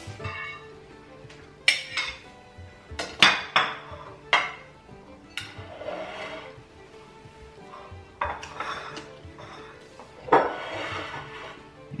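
Knife and ceramic plates clinking and knocking on a stone countertop as slices of bread are cut and plated: a scatter of sharp clinks, several close together about three seconds in and another near the end. Soft background music underneath.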